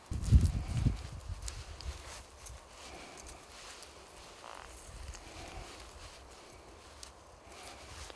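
Low rumbling buffets on the microphone for about the first second, then faint rustling with a few small clicks while fingers pick apart a frozen apricot blossom.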